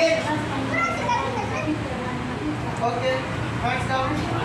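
Children's voices talking and calling out in short scattered bits, over a low steady hum.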